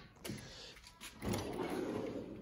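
Metal tool chest drawer pulled open on its slides: a light click, then a rolling slide noise starting a little past halfway.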